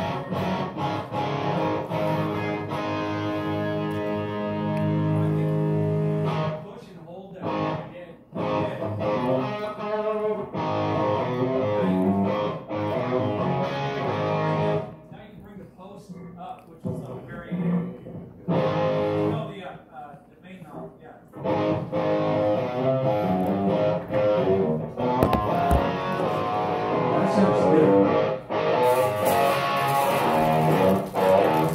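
Amplified guitar being played: chords and notes left ringing, with a few short pauses and a longer lull in the middle before the playing picks up again.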